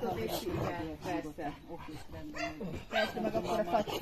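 Puppies yipping and barking as they play, with people's voices mixed in.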